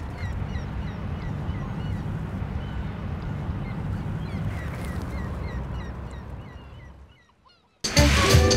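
Outdoor ambience of many small birds chirping, several short chirps a second, over a steady low rumble. It fades out near the end.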